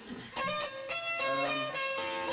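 Guitar picking a short run of single notes that begins about a third of a second in, each note ringing briefly before the next.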